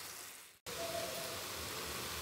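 Coconut and jaggery mixture cooking in an aluminium pan, giving a soft, even sizzling hiss. The sound fades out and drops to silence for a moment about half a second in, then the steady hiss resumes.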